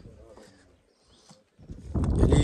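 Footsteps on loose stone rubble, with a faint voice at the start and a quiet stretch in the middle.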